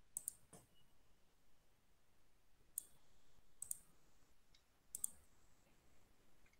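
Quiet room tone broken by a handful of sharp, faint clicks, several in close pairs, spread a second or two apart.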